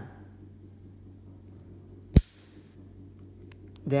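A single sharp click about halfway through, with a short rustle after it: the white plastic TRV adapter snapping into place as it is pressed down onto a Danfoss-type radiator valve. A few faint ticks follow near the end.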